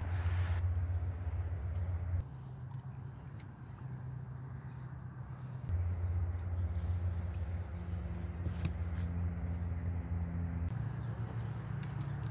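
Low, steady drone of road traffic, shifting in level and pitch a few times.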